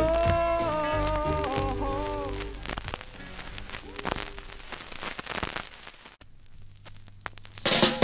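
A soul/rocksteady record ends: held notes over the band fade out in the first few seconds, leaving a few scattered drum hits that die away into a short near-silent gap. Near the end the next track, a ska number, starts with a loud full-band entry.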